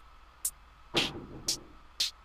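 Electronic drum loop from a REAKTOR step-sequenced sample kit: short, crisp hi-hat-like hits about every half second, with a fuller hit about a second in. The hi-hat is under step-by-step pitch modulation, so its pitch shifts from hit to hit.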